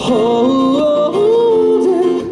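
A male voice sings live, the melody sliding up and down and settling on a held note, with acoustic guitar accompaniment.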